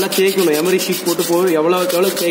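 Abrasive paper rubbing on a small mild steel specimen in rapid back-and-forth strokes, scouring off the corrosion to get back to polished bare metal.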